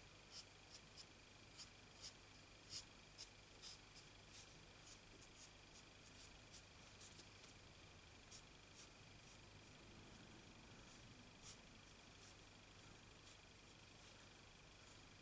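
Faint, irregular little ticks and scratches of a marker nib drawing short strokes on cardstock, coming thick in the first half and thinning out later, over a quiet room with a faint steady high whine.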